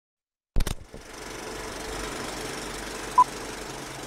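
Intro sound effect: a sharp double click about half a second in, then a steady mechanical rattling whir, with one short high beep about three seconds in.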